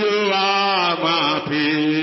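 Worship singing: a voice chanting long held notes with a wavering pitch over a steady sustained tone, with a brief break about one and a half seconds in.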